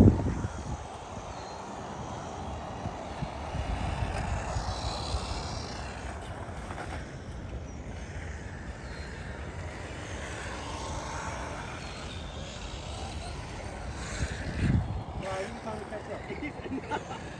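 Wind buffeting the microphone over a steady outdoor hiss, with stronger gusts about four seconds in and again near the end.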